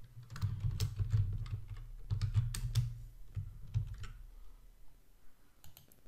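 Computer keyboard keys clicking in a quick irregular run through the first four seconds, then a few mouse clicks near the end.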